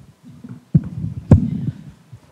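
Handling noise on a corded handheld microphone as it is picked up: low, muffled thumps and rubbing, with a sharper knock a little past halfway that is the loudest sound.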